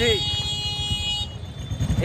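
A vehicle horn holds one steady high note for about a second and then cuts off, over the low running of motorcycle and vehicle engines in street traffic.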